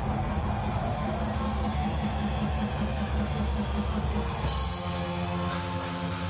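Heavy metal band playing live: distorted electric guitars, bass and drums on a fast, evenly pulsing riff. Near the end the riff changes to held notes.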